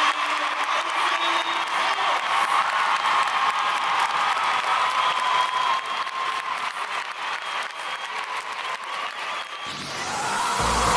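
Large arena crowd applauding a just-completed gymnastics rings routine, the clapping slowly dying away.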